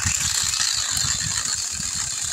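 Seesii PS610 battery-powered pole saw's 6-inch brushless chainsaw head running and cutting into an overhead tree limb: a fast, steady mechanical chain rattle.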